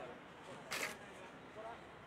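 Faint background voices of people gathered at a street food stall, with one short, sharp noise a little under a second in.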